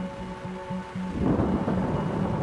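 Sustained background music, with a low rumble of thunder rolling in a little over a second in.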